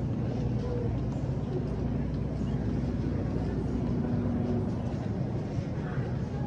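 Steady low mechanical hum of supermarket refrigeration and ventilation, with no clear breaks or impacts.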